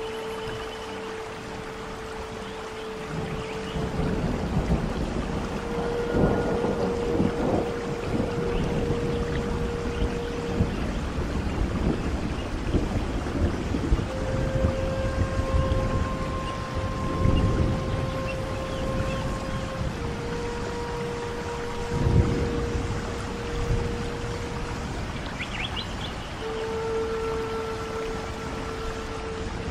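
Native American-style flute playing slow, long held notes with pauses between them, over steady rain. Low rumbles of thunder swell up now and then.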